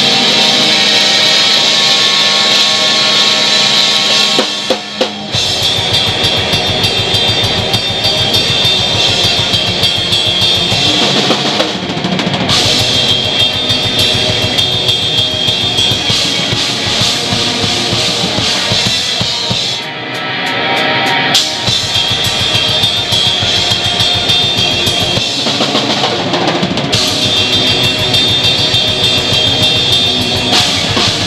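Instrumental post-hardcore band playing live: a DW drum kit with heavy bass drum and cymbals under distorted electric guitar. A held guitar chord rings for about the first five seconds before the drums come in with the full band, and the playing thins briefly twice.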